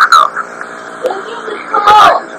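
Television launch-countdown commentary heard off a TV speaker as taped onto audio cassette. An announcer's voice is heard at the start and again near the end. Between them is a short, quieter pause carrying a steady hiss and a faint background voice.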